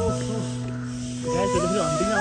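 Background music: held melody notes over sustained low bass notes, with a wavering melodic line coming in about halfway through.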